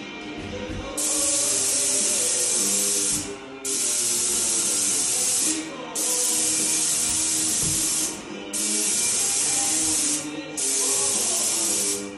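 Airless paint spray gun hissing as paint is sprayed on a wall: five trigger pulls of about two seconds each, with short breaks between, starting about a second in. Music plays underneath.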